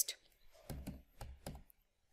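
A computer keyboard being typed on: about five separate keystrokes, unevenly spaced, as a short word is typed.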